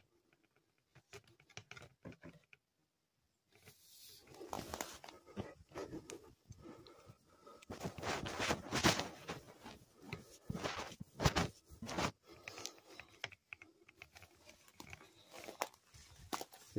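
Footsteps crunching and rustling over dry debris and vegetation, irregular and uneven, starting after about three seconds of near silence.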